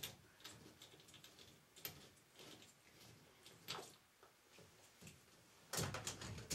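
Faint, scattered clicks and light knocks of plastic drain fittings being handled and fitted onto a drain pipe, with the loudest knocks near the end.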